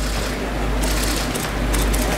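Steady room noise in a busy hall, with a deep constant low hum and a hiss, and no distinct event standing out.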